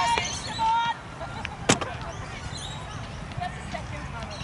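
Players' shouted calls on a football pitch, then a single sharp thud of a football being kicked a little under two seconds in.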